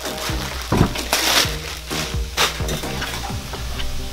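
Clear plastic packaging bag crinkling and rustling in several short bursts as a boxed appliance is pulled out of it, over steady background music.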